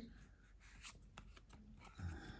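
Near silence with a few faint, soft ticks of card stock as trading cards are slid and flipped through by hand.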